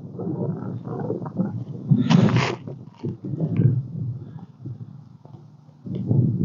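Dry grass and plant stems rustling and brushing close to the microphone, with small handling bumps, as the camera is pushed in among the vegetation. There is a louder, brighter rustle about two seconds in.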